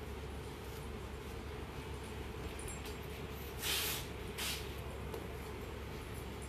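Two short rustles of heavy embroidered suit fabric being handled, about three and a half and four and a half seconds in, over a steady low room hum.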